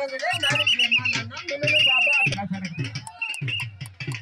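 Trilling whistle blasts, typical of a kabaddi referee's pea whistle: two long blasts and a short third, over a man's voice.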